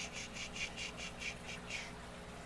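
A bird's call: a rapid run of about ten short, high chirps, about five a second, stopping shortly before the end.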